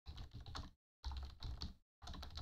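Rapid typing on a computer keyboard: two runs of quick keystrokes, each a little under a second, with a short pause between.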